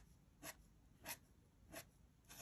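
Faint scratching of a metal dip pen nib on brown paper, four short strokes about half a second apart, as fine lines of hair are inked.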